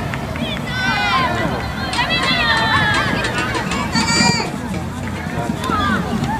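High-pitched shouting from young players and people on the sideline during a football match, in several short bursts over steady outdoor background noise.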